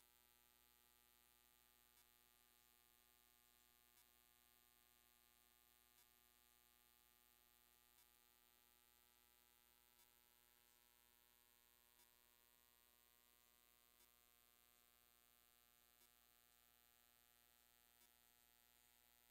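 Near silence: a faint steady electrical hum, with a faint short tick every two seconds.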